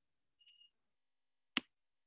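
Quiet, broken by one short, sharp computer mouse click about one and a half seconds in, made while the on-screen spreadsheet is being moved and resized.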